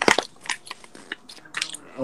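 A sheet of origami paper being folded and pressed flat by hand, crackling irregularly, with the sharpest crackle right at the start.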